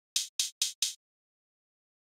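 Four short, evenly spaced sampled hi-hat hits, about four a second, played back from a hi-hat pattern sequenced in Reason.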